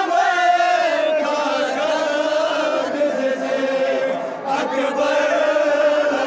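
Men's voices chanting a Balti noha, a Shia mourning lament, in long drawn-out lines with a brief break about four seconds in.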